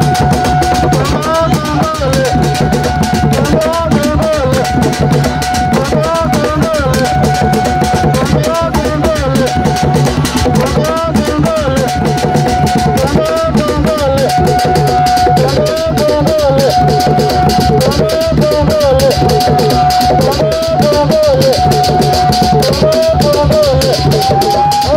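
Somali Bantu dance music: drums and a shaker keep up a fast, steady beat under a melodic phrase, a held note then a wavering figure, that repeats about every two seconds.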